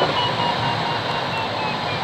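Steady airflow noise around the canopy of a Pilatus B4 glider in flight, with a run of short high beeps repeating about three times a second.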